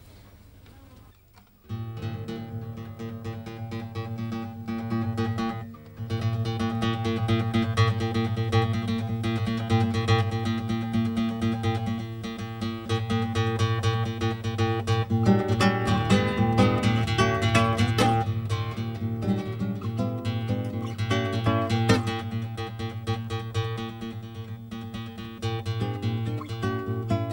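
Solo classical guitar played live: after a quiet moment, plucked chords and melody begin about two seconds in. The playing breaks off briefly around six seconds, then carries on steadily.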